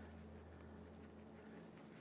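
Near silence: a faint steady low hum of room tone.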